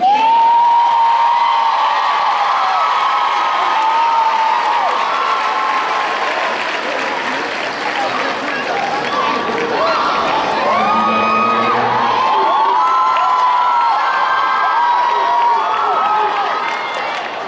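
Audience applauding and cheering, with whoops and shouted calls over the steady clapping.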